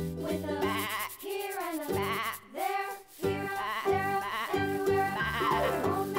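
Cheerful children's background music. Between about one and three seconds in, a wavering, bleat-like sound comes in over it.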